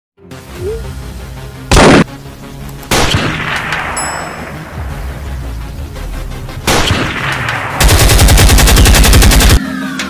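Gunshots from hunting guns over background music: a loud shot about two seconds in, another about three seconds in with a long echo, and one near seven seconds. This is followed by a loud, rapid, evenly spaced rattle lasting almost two seconds near the end.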